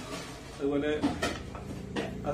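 A plate being set down onto another plate on the table: a single clunk a little over a second in, just after a brief bit of a man's voice.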